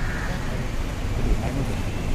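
Steady low rumble of road traffic, with faint, indistinct voices over it.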